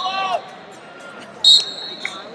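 A brief shout at the start, then a short, loud referee's whistle blast about one and a half seconds in, stopping the wrestling action after a scoring throw, over the murmur of an arena crowd.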